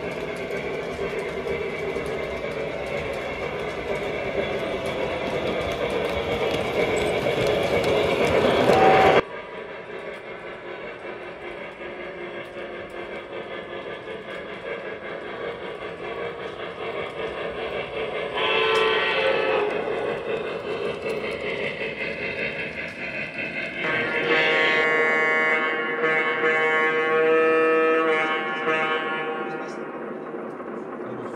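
O-scale three-rail model locomotives running, their onboard sound systems playing engine and railroad sounds. A louder passage builds and cuts off sharply about nine seconds in, and a long horn blast sounds from about 24 seconds for some five seconds.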